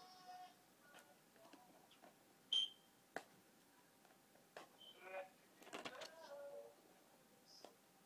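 Mostly quiet, with faint scattered clicks and scratches of fingers picking at the sticky label on a plastic DVD case, and a brief high squeak about two and a half seconds in.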